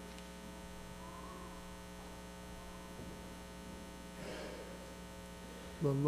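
Low, steady electrical mains hum in the amplified sound feed, with no singing or speech over it.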